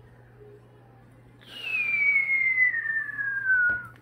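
Moluccan cockatoo giving one long, loud whistle that starts about a second and a half in and slides steadily down in pitch for about two and a half seconds.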